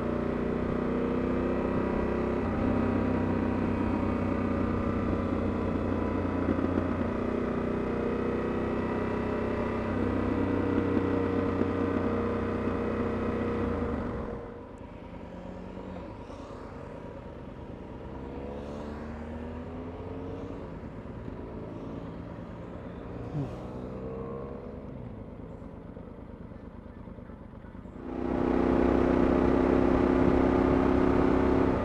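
Motorcycle engine running at a steady cruising speed, with wind rushing past the helmet microphone. About halfway through it suddenly drops to a quieter stretch in which several other motorcycles pass by, their engine notes rising and falling. The loud riding sound returns near the end.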